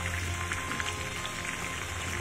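Cashews, almonds and pistachios sizzling and crackling as they fry in hot oil, a dense steady crackle, with background music playing over it.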